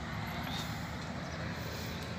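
Steady low rumble with a hiss of outdoor background noise, with no clear voice, tone or single event.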